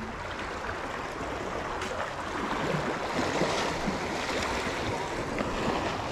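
Steady noise of sea water washing against a jetty, mixed with wind on the microphone.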